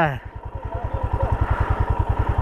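Motorcycle engine idling at a standstill: a steady, even low pulsing beat.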